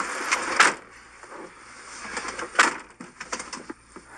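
Scuffling and clothing rustle in the back seat of a police car as a man is pushed in, with a couple of thumps in the first second. Then one sharp knock about two and a half seconds in, followed by a few light clicks.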